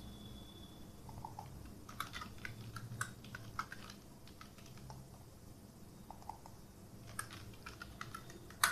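Faint computer keyboard typing: scattered key clicks in short runs, over a low steady hum.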